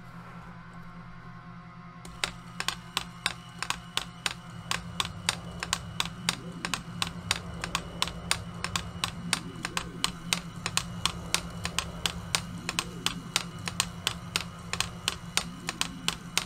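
KIDZROBOTIX motorized toy robot hand running: its small geared motor whirs while the plastic fingers tap down in a rapid, uneven rhythm of about four clicks a second, starting about two seconds in. The tapping is a programmed rhythm looping continuously.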